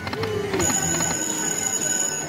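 Video slot machine's electronic game sounds as the reels spin: several steady tones, one of them high and piercing, held together from about half a second in.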